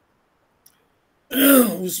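A man clears his throat once, loudly, after about a second of near silence, just before speaking again.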